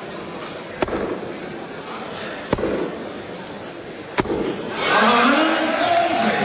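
Three darts striking a dartboard, one sharp thud about every 1.7 seconds. Crowd noise then swells into cheering after the 140 visit, with a man's voice calling out over it near the end.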